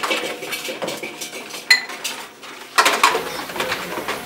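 Metal dishes, a colander and a tray knocking and clinking as they are washed by hand in basins. There is a sharp ringing clink just under two seconds in and a short clatter near three seconds.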